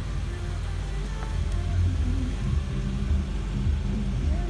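Low, steady rumble of a 2015 Infiniti Q40's 3.7-litre V6 idling, heard from inside the cabin.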